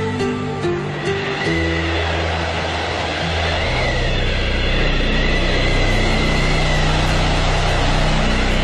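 Soundtrack music: a few melodic notes in the first second or so, then held low chords under a rushing noise that swells and stays loud from about halfway through.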